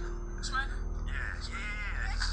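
Excited, wavering voices calling out over background music with a steady low bass pulse and a held tone.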